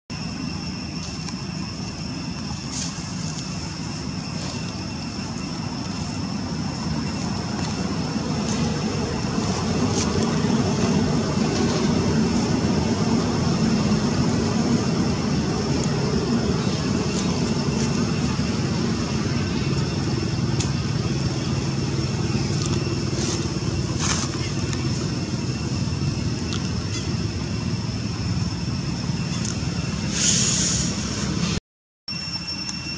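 Outdoor ambience dominated by a low rumble of road traffic that swells through the first half and stays up, with a steady high-pitched whine above it and scattered faint clicks.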